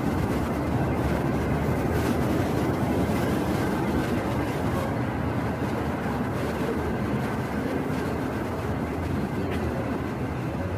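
Steady, loud rumble of bus engines and traffic at a busy bus terminal, cutting in suddenly at the start with no single event standing out.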